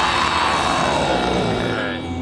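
Death metal recording at a break: the drums stop and a held, distorted sound with a slow, arching sweep in pitch rings on and fades away near the end.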